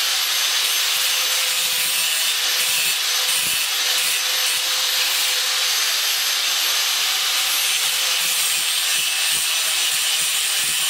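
Small handheld power grinder running continuously against the metal of a fuel pickup, cleaning out the cut openings. It makes a steady, even grinding hiss with no pauses.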